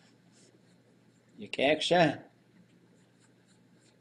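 A short two-syllable spoken utterance about one and a half seconds in, in an otherwise quiet room with a few faint ticks and scratches.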